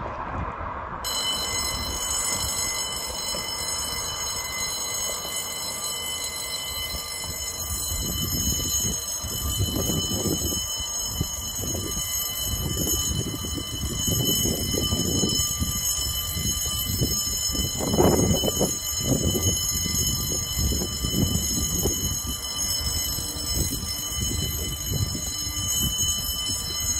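Electronic warning alarm at a lift bridge's road barriers sounding a steady, high-pitched continuous tone as the road is closed for the bridge to lift. Irregular low rumbling runs underneath, loudest about two-thirds of the way in.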